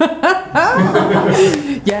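A woman chuckling and laughing, with a little speech mixed in.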